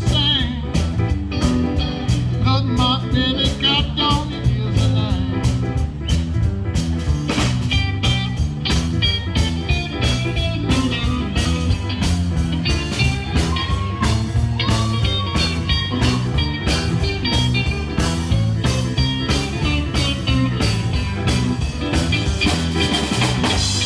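Live blues-rock band playing an instrumental stretch: electric guitar over bass guitar and a drum kit keeping a steady beat, with a few bent guitar notes about two-thirds of the way in.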